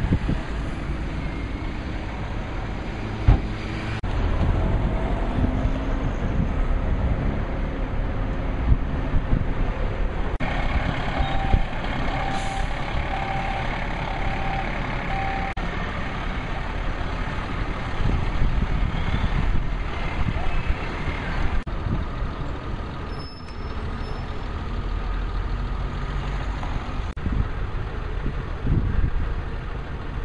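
Street traffic noise, with cars and heavier vehicles going by. In the middle, a vehicle's reversing alarm beeps about five times in a steady rhythm.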